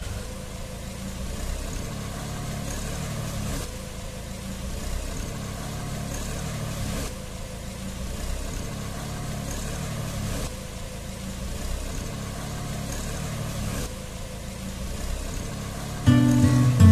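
John Deere 5310 tractor's three-cylinder diesel engine running steadily as the tractor drives over straw. It plays as a string of short clips, with an abrupt change in the sound about every three and a half seconds.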